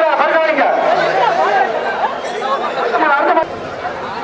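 Speech only: several men's voices talking over one another amid crowd chatter, dropping in level briefly near the end.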